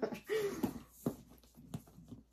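Metal clip hardware on a leather bag strap clicking twice as the strap is fastened on by hand, with small handling scrapes. A short wordless vocal sound from the person comes first.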